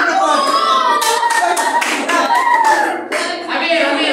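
Children's voices calling out over a run of hand claps, the claps coming quickly one after another between about one and three seconds in.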